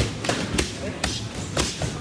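Boxing gloves striking focus mitts in a run of sharp punches, about five smacks in two seconds, with gym noise behind.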